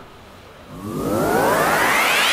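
Electronic riser sound effect: after a short quiet start, a cluster of synth tones sweeps steadily upward in pitch with a rising hiss, growing louder. It is the build-up that opens the channel's logo outro music.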